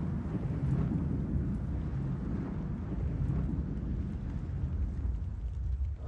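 Rumbling sound effect of a news-show logo intro: a steady, dense low rumble.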